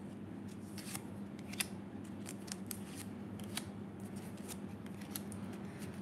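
Tarot cards being handled: faint, irregular clicks and snaps as cards are drawn off the deck and laid down, one louder click about a second and a half in.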